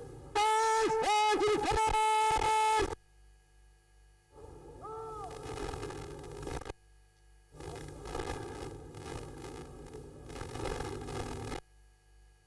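A parade commander's drawn-out shouted word of command, one long held call with a few dips in pitch, carried over the public-address system. Later come two stretches of open-air noise, the first holding a shorter rising-and-falling call.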